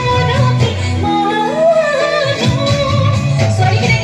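A woman singing an Assamese song live through a microphone and PA, backed by a band with electric guitar, bass guitar and drums. Her melody holds long notes with a waver, over a steady bass line, with drum hits in the second half.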